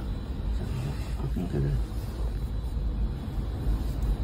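Steady low rumble inside a car cabin, with faint voices murmuring briefly about a second in.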